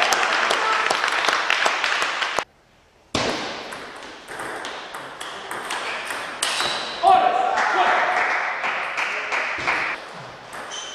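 Celluloid-style table tennis balls clicking off rackets and tables in a rapid irregular patter, from rallies at more than one table in a hall. A voice calls out loudly about seven seconds in, and the sound drops out briefly at about two and a half seconds.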